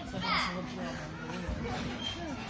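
Background voices of people in a hall, children among them, talking and calling out.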